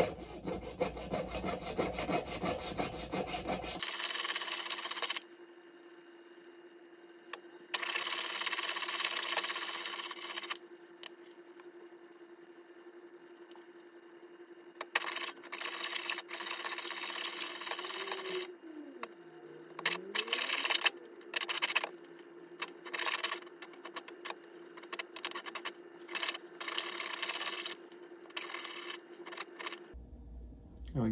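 Jeweller's saw (piercing saw) cutting sterling silver on a bench pin: runs of quick rasping strokes lasting a few seconds each, broken by short pauses, the runs getting shorter and choppier toward the end.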